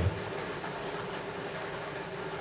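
Lottery ball-draw machine running: a steady mechanical rumble of balls tumbling in the glass mixing globe, over a faint steady hum.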